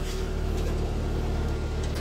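Steady low mechanical hum of machinery running aboard a tool truck.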